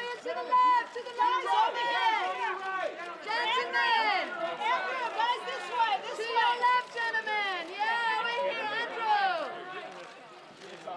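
Several raised voices overlapping, press photographers calling out at once to get the posing group's attention.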